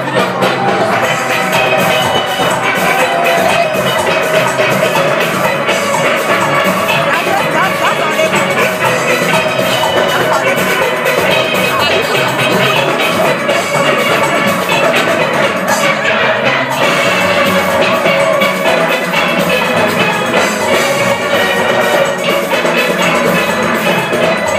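A steel orchestra of many steel pans playing a fast, rhythmic panorama arrangement live, backed by a steady drum and percussion beat.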